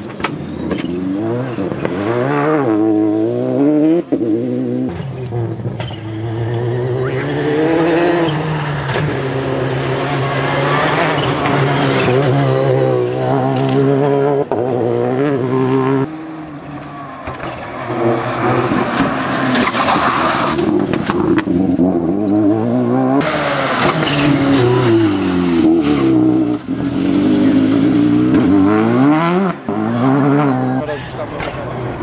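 Citroën DS3 rally car at full stage pace: the engine revs climb and drop again and again through gear changes and corners, with tyre and gravel noise. It is heard over several separate passes, with the sound cutting abruptly from one to the next.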